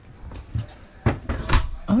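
Closet door in a travel trailer being opened: a soft thump, then a couple of sharp clicks and knocks from its latch and door from about a second in.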